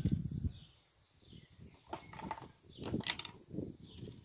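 A plastic drinks bottle being handled, with a few scattered clicks and crackles, after a short low hum in the first half second.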